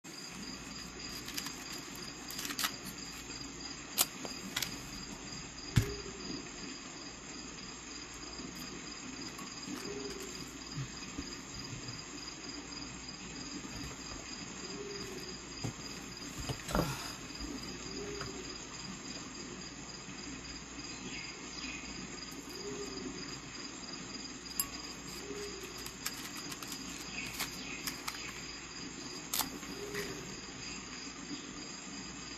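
Steady background noise with a thin, steady high-pitched tone running through it. It is broken by scattered sharp clicks and knocks, the loudest about 4, 6 and 17 seconds in.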